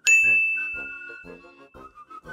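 A single bright ding from a notification-bell sound effect, struck once at the start and ringing out as it fades over about two seconds.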